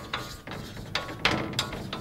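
Chalk writing on a blackboard: a run of short scratching strokes with light taps as letters are written.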